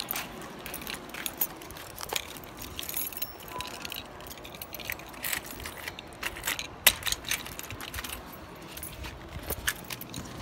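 A bunch of keys on a ring jangling and clinking in the hand, with irregular light metallic clicks. About two-thirds of the way through, a key goes into a door-knob lock and is turned, and a sharp click there is the loudest moment.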